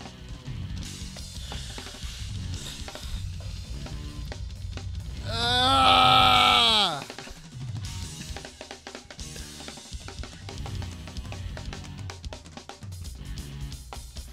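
Fast, busy drum-kit playing on a DW kit, with snare, bass drum and cymbals in rapid fills and rolls. About halfway through, a loud held pitched note rises over the drums for a second and a half and slides down in pitch as it ends.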